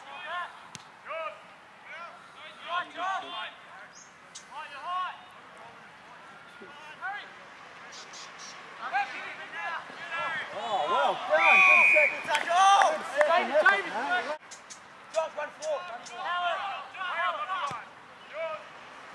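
Players and spectators shouting and calling out across an Australian rules football ground, building to a burst of loud overlapping shouting in the middle as the ball is contested on the ground. A short single whistle blast, likely the umpire's, cuts through the shouting about halfway through.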